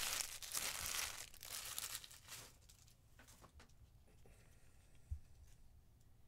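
Foil wrapper of a trading-card pack crinkling and tearing as it is opened, for about the first two and a half seconds, followed by faint rustles and light ticks of cards and plastic being handled.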